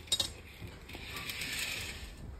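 Curtain being drawn along its ceiling track: a few sharp clicks just after the start, then a steady sliding hiss for about the last second.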